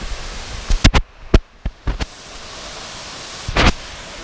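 Steady rushing outdoor noise broken by several sharp knocks and bumps from a handheld action camera being moved: a cluster about a second in and another near the end. The sound is briefly muffled in between.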